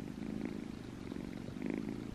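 Kitten purring close to the microphone: a soft, steady low rumble.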